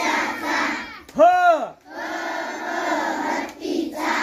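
A large group of schoolchildren chanting Marathi alphabet syllables together, loud and in unison. About a second in, the chant breaks for one single pitched call that rises and falls, and then the group chanting resumes.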